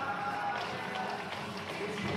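Live flamenco music: a voice singing over guitar, with rhythmic hand-clapping (palmas) and the dancers' stamping footwork.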